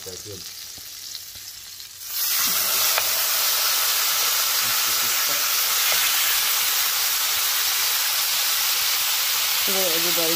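Raw lamb shoulder chops laid into a hot, oiled frying pan: a faint hiss of the heating oil, then loud, steady sizzling from about two seconds in as the meat hits the pan and sears.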